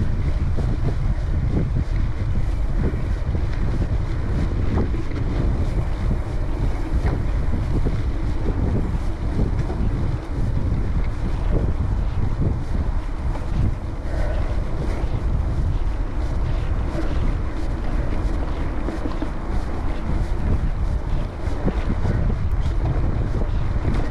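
Wind buffeting the camera microphone on a gravel bike ridden at about 20 km/h, over the steady rumble of tyres on a dirt and leaf-covered trail. Frequent small clicks and rattles run throughout.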